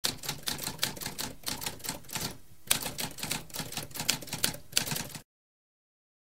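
Typewriter typing: a fast run of key strikes, a short pause about two and a half seconds in, then more typing that stops abruptly a little after five seconds.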